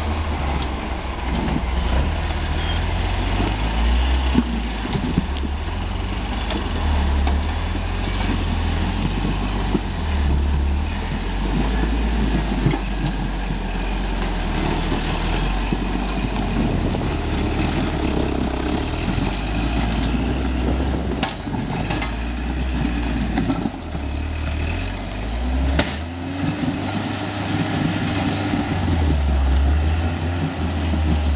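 Rock-crawling buggy's engine working at low speed as it crawls up a steep rock face, with a low rumble that rises and falls in revs as the driver feeds throttle. A few sharp knocks or clicks about two-thirds through.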